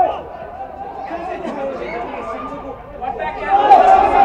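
Several people's voices chattering and calling out at a football match, quieter at first and growing loud about three and a half seconds in.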